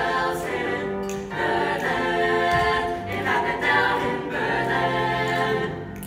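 Mixed-voice choir singing held chords in phrases, accompanied by piano. The voices stop near the end, leaving the quieter piano.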